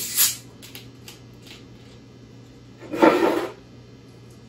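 A plastic cola bottle's screw cap is twisted off with a short hiss of escaping carbonation, followed by a few faint clicks. About three seconds in comes a louder half-second gush as the cola starts pouring into a ceramic mug.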